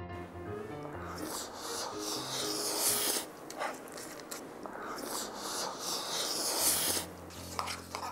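Light background music over the hiss of fried rice sizzling and being stirred in a hot pan, then close-miked eating noises from a diner, in stretches that cut off sharply.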